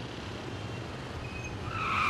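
Car running, heard from inside the cabin as a steady low hum, then near the end its tyres begin a loud high screech as it brakes hard in a sudden emergency stop.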